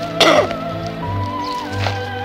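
Background music with held, gliding tones, over which a man gives a short, loud cough just after the start.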